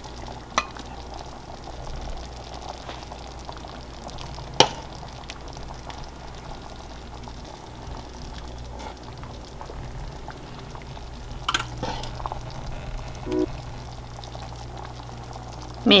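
Pot of bean broth simmering on the stove with a soft, steady bubbling. A metal spoon clinks sharply against the pot and bowl a few times as broth and dumplings are ladled into a ceramic bowl.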